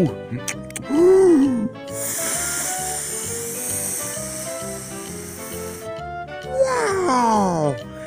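Cartoon bubble-blowing sound effect: a steady hiss lasting about four seconds as the bubblegum bubble inflates, over light background music, followed near the end by a falling gliding tone.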